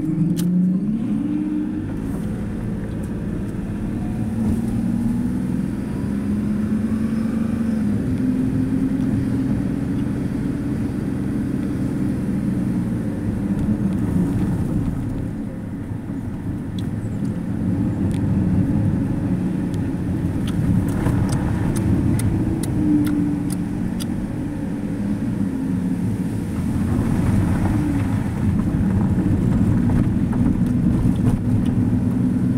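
Car engine heard from inside the cabin, running steadily with its pitch rising and falling as the revs change while the car pulls away. A few light clicks sound around the middle.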